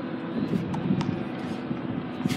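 Steady low rumble of city traffic, with one sharp knock about a second in: a tennis ball bouncing on the hard court.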